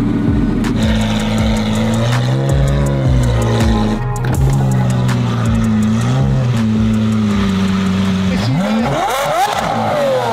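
Lamborghini Aventador SVJ's V12 running at idle, swelling in pitch with a couple of brief throttle blips, then rising more sharply near the end.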